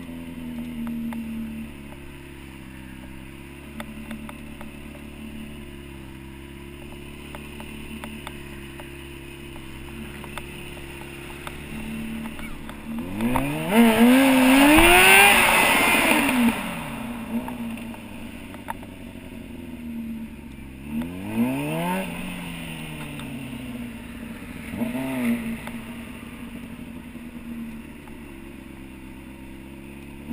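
Stunt motorcycle's engine heard close up from the rider's onboard camera, running at low revs for most of the time. About halfway through it is revved hard for a few seconds, its pitch climbing and then falling, and two shorter blips of the throttle follow later.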